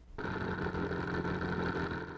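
Light sport plane's propeller engine running steadily, starting a moment in.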